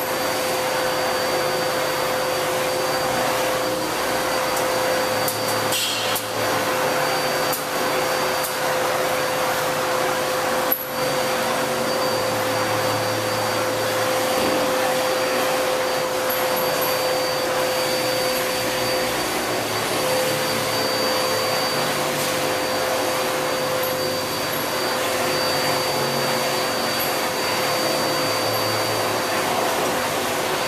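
Steady mechanical whir with a constant hum and a faint high tone, unchanged in level throughout, with a single sharp click a little before the halfway point.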